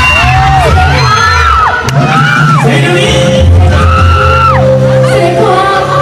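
Live band music with a singer holding long notes that slide up into each note and fall away at the end, over a steady bass line.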